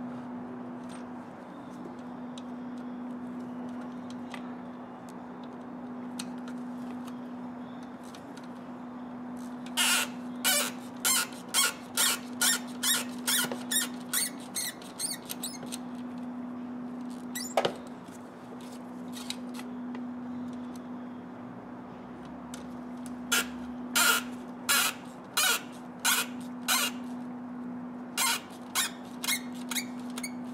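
Torx T30 hand tool undoing the screws that hold the throttle body to the inlet manifold, clicking in two runs of quick, evenly spaced strokes: one about a third of the way in and one near the end. A steady low hum lies underneath.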